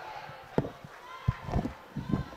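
A few sharp knocks or thumps, about half a second apart in the second half, over faint background voices.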